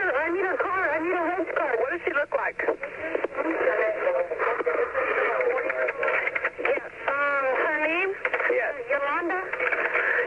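Recorded 911 emergency call: a motel clerk and an emergency operator talking back and forth over a narrow, thin-sounding telephone line.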